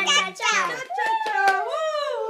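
Children's excited wordless voices, with a long voice that slides down in pitch in the second half.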